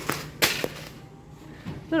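A plastic bag of panko breadcrumbs handled and dropped into a metal shopping cart: a rustle, then a sharp slap about half a second in.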